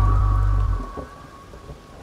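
Deep house electronic music: a held bass chord cuts off about two-thirds of a second in, leaving a quiet break of noisy, rumbling texture.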